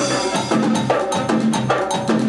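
A live band playing an instrumental passage of an upbeat dance number: electric bass, keyboard and drum kit, with a fast, even percussion pattern on top and no vocals.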